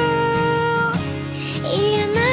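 A female voice sings a Japanese pop ballad over soft instrumental backing. She holds one long note for about a second, breaks off, and starts a new phrase that rises near the end.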